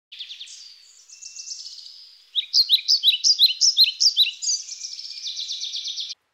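Songbird singing: a run of quick notes, then from about two seconds in a louder series of rapid repeated chirps, ending in a fast trill that cuts off suddenly.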